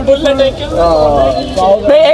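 Men talking in a loose, continuous stream of voices.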